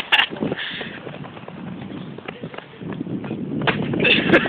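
Irregular thumps of running footsteps, with handheld-camera jostling. A louder burst comes right at the start.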